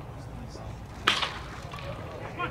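A single sharp crack of a baseball bat hitting a pitched ball about a second in, with a short ring after it.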